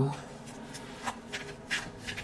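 Tarot cards being shuffled and handled in the hands: a quick series of about six short, papery card flicks.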